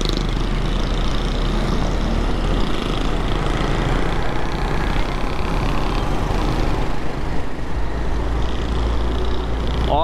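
Busy city road traffic: a dense mix of vehicle engines and tyre noise over a steady low rumble.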